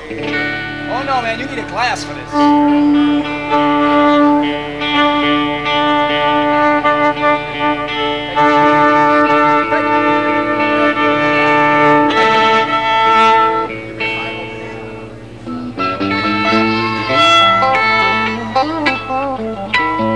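Live band music: a fiddle playing long held notes with slides over electric guitar, easing off briefly about three quarters of the way through before picking up again.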